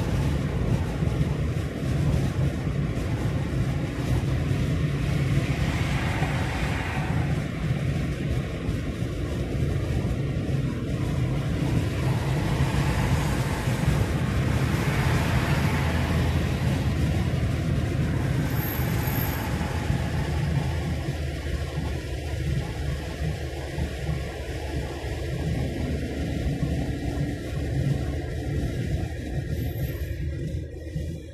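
Steady low rumble of a car driving at motorway speed, road and tyre noise with wind, swelling briefly twice as it goes.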